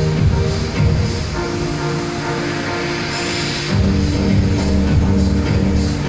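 Electronic music with a heavy beat. The beat drops out about a second and a half in, leaving held tones, and comes back about two seconds later.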